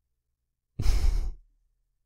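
A man sighing once, about a second in, a breathy exhale lasting about half a second.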